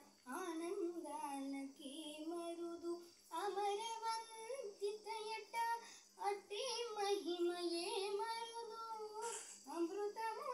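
A young girl singing solo and unaccompanied, in three long melodic phrases with held, wavering notes and short breaths between them.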